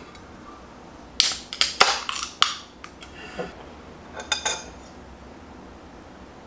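An aluminium can of Kirin lager being opened by its ring pull: a quick run of sharp clicks and hissing about a second in, then a few more small clicks near the end.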